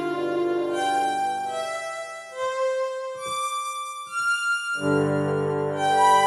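Casio CT-640 electronic keyboard playing an improvised melody on a sustained voice preset: held notes, then single notes stepping upward in pitch, and near the end a full chord with a bass note comes in, louder.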